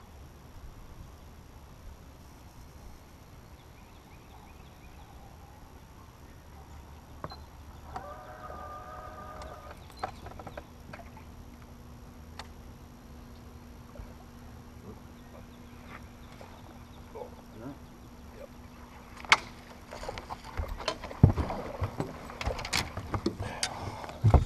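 Quiet open-air ambience on a fishing boat deck. About ten seconds in, a steady low hum comes in, likely the bow-mounted trolling motor. In the last few seconds come scattered clicks and a couple of sharp knocks from rods, reels and gear handled on the deck. A brief distant call is heard near the middle.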